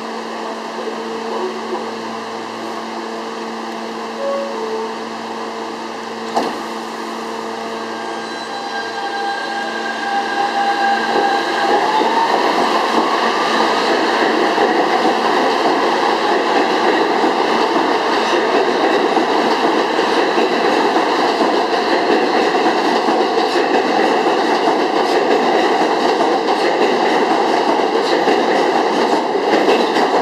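R160 subway train standing with a steady electrical hum, a sharp knock about six seconds in, then pulling out: the traction motors whine, rising in pitch as it accelerates, and the loud rumble and rattle of the cars passing on the rails follows.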